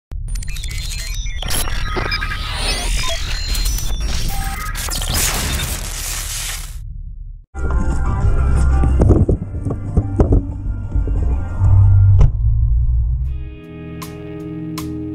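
Logo-intro sound design: electronic music over deep bass with glitchy stutters and sharp impact hits. It cuts out for a moment about halfway through, comes back with more hits and booms, and a guitar-led song begins near the end.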